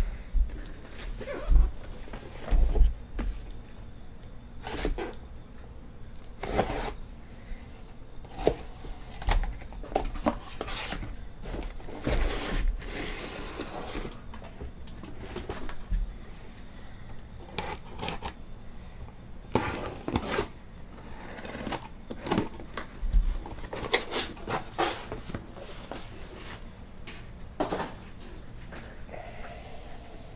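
Hobby boxes of trading cards being taken out of a cardboard shipping case by hand and set down in a stack: irregular knocks, scrapes and rustles of cardboard and shrink-wrap.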